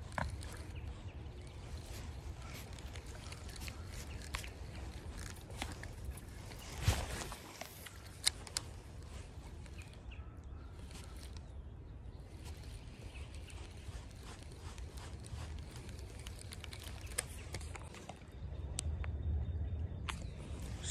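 Creek water running over riffles as a steady low rumble with a faint hiss. Small scattered clicks and two sharper knocks come about seven and eight seconds in.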